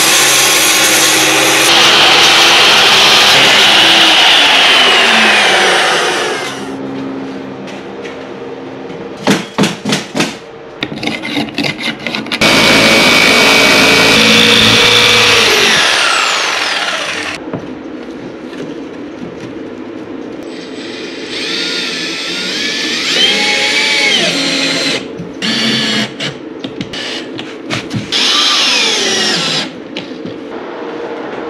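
Power tools working cement backer board. A circular saw cuts through the board for about the first six seconds and winds down with a falling whine, a jigsaw cuts it for about five seconds starting some twelve seconds in, and near the end a cordless drill drives screws in short runs.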